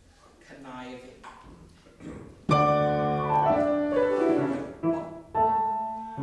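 Grand piano playing orchestral-style accompaniment: a loud chord struck suddenly about two and a half seconds in, followed by descending notes and two more struck chords near the end.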